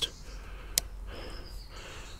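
A single sharp click a little under a second in, from the trail camera being handled, over a quiet background with a soft breath.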